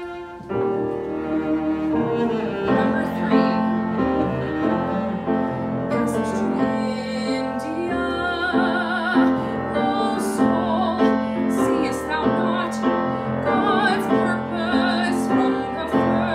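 A song performed live on grand piano and cello, with a solo voice singing in a classical style with vibrato.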